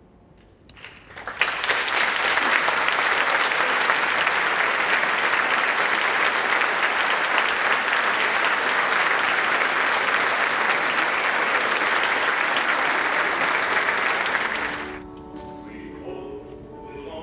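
Audience applauding, breaking out about a second in and holding steady before dying away near the end, when a grand piano starts to play.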